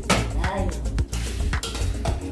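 Spoon and dishes clinking as ground-meat filling is spooned onto flour tortillas, over background music with a steady beat.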